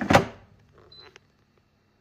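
A Chefman air fryer's basket drawer is pushed shut with a thunk. About a second later comes a short high electronic beep and a click as its touch panel is pressed.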